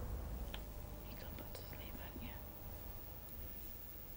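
Faint, indistinct voices of people talking, too low to make out, over a steady low background rumble.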